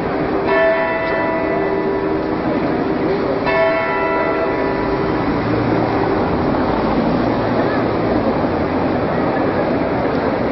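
Two strokes of a clock-tower bell about three seconds apart, each ringing on for a second or more, from the Zytglogge clock tower in Bern as its figures perform.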